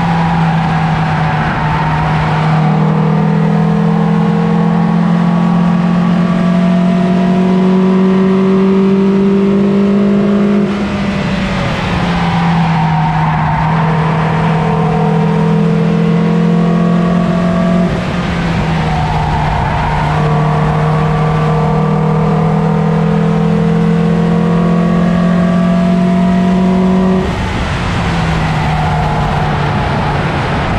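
In-car sound of a Toyota Yaris's 1.5-litre 1NZ-FE four-cylinder engine held at high revs on track, with a steady engine note that creeps up slowly. The pitch changes suddenly and the level dips briefly three times, about 11, 18 and 27 seconds in, as the driver lifts or shifts, over constant road and wind noise.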